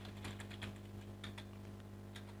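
Faint computer keyboard keystrokes: a handful of irregularly spaced clicks as a short word is typed, over a steady low hum.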